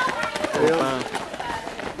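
Running footsteps of several runners passing close by on a paved road, mixed with the voices of people standing nearby.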